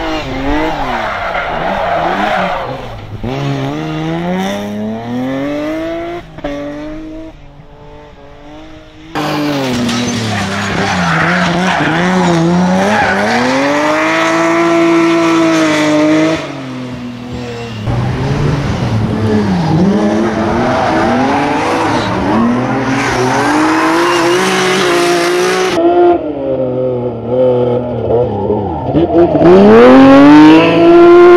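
A BMW E36 3 Series coupé sprint-rally car being driven hard: the engine revs up and drops back again and again through gear changes, with tyres squealing as it slides through the corners. The sound jumps abruptly in loudness several times.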